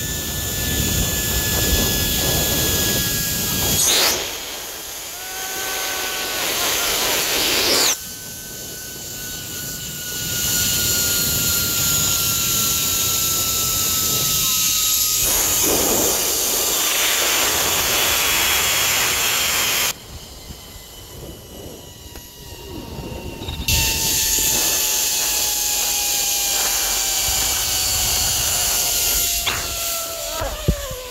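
Zipline trolley pulleys running along the steel cable at speed, a whine that falls steadily in pitch as the rider slows toward the end of the line, under a loud rush of wind on the microphone that drops away briefly twice.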